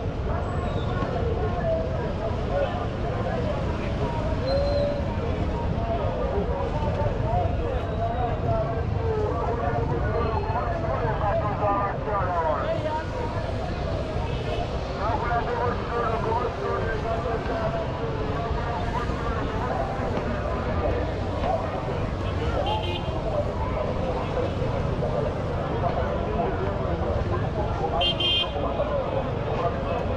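Busy street-market ambience: many people talking over each other, with the low rumble of traffic. A vehicle horn toots briefly a couple of times near the end.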